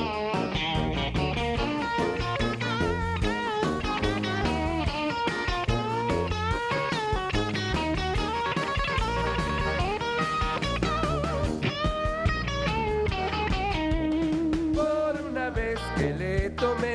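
Live band music led by an electric guitar solo of bent, wavering notes over a drum beat and a low bass line.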